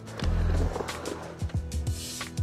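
Music with a deep bass line and falling bass glides, mixed with the rolling and clacking of a skateboard.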